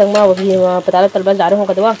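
A woman's voice with long held pitches, no clear words, over food sizzling in an oiled kadhai as it is stirred with a spatula.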